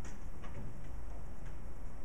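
Steady low room hum with a few faint, irregular clicks: one at the start, two close together about half a second in, and one more about a second and a half in.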